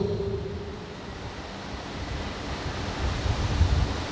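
Steady rushing background noise with a low rumble that swells near the end, after a man's voice trails off in the first half second.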